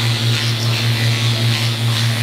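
Power-assisted liposuction handpiece running, a low steady buzz that swells and fades several times a second, with a steady hiss above it, as the vibrating cannula works into the abdominal fat.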